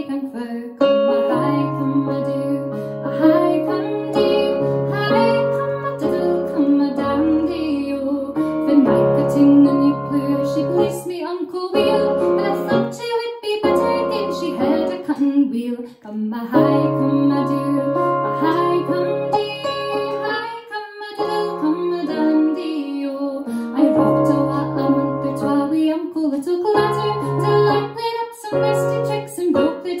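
A woman singing a slow song, accompanying herself on a Roland electric keyboard. Held bass notes and chords sit under the vocal line, with brief pauses between phrases.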